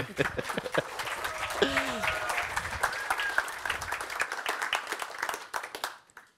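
Audience applauding, with a laugh and a voice or two over the clapping. The applause dies away near the end.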